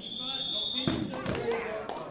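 Referee's whistle, one steady blast lasting just under a second, signalling the pin (fall) that ends the wrestling match. It is followed by a couple of thuds on the mat about a second in, then voices.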